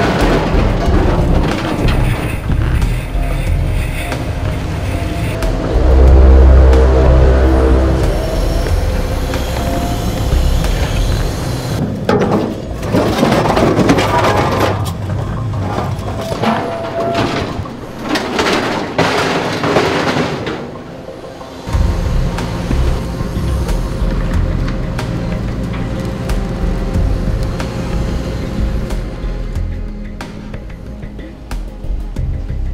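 Background music laid over scrap-yard noise: scrap metal crashing and clattering as it is tipped and handled, with a heavy low boom about six seconds in and a run of crashes in the middle, then a steady low machinery drone.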